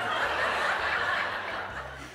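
A studio audience laughing together, a dense wash of many voices that dies away over about two seconds.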